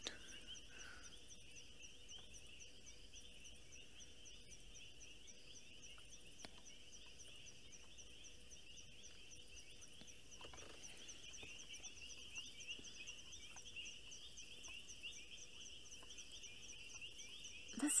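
Faint, steady night chorus of calling frogs and insects: a continuous pulsing trill with a faster, higher ticking above it.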